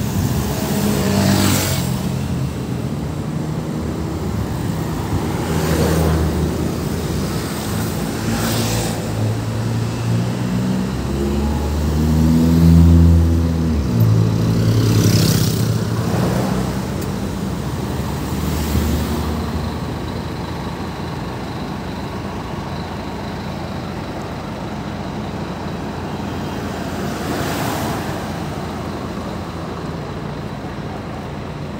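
City street traffic: several cars driving past one after another with a short rush of tyre noise each, and a double-decker bus's engine running loudest as it passes close, around twelve to sixteen seconds in. Toward the end it settles into a steadier, quieter traffic hum.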